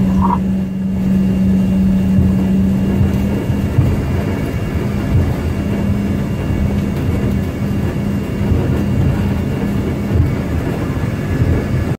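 Cabin noise of an Embraer ERJ-145 taxiing: a steady hum from its rear-mounted turbofan engines over a low, uneven rumble from the wheels on the taxiway. The hum eases a little a few seconds in.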